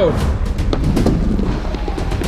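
Skateboard-scooter's four wheels rolling down a wooden ramp: a steady low rumble with several sharp knocks.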